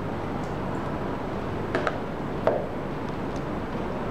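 Steady background hiss with two light clicks about two seconds in, from hands handling the charger case and its parts on a table.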